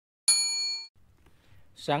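A bright electronic ding, the notification-bell chime of an animated subscribe button. It rings for about half a second and then cuts off.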